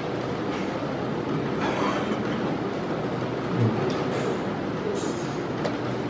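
Steady background noise of a busy indoor playing hall, with a few faint clicks and knocks scattered through it and one low thump about halfway through.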